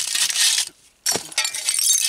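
A short-handled shovel scraping and digging into dump soil packed with broken bottle glass, the shards grating and clinking against the blade. There is a brief pause near the middle, a sharp click, then more gritty scraping with glassy tinkles.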